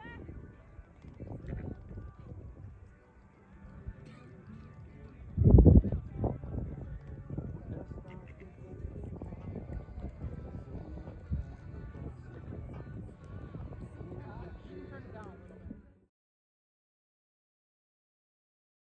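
Outdoor ambience of distant voices and faint music under a low wind rumble on the microphone, with one loud low bump or gust about five and a half seconds in. The sound cuts off abruptly about two seconds before the end.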